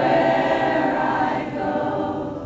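Several voices singing together without amplification, in slow, held notes.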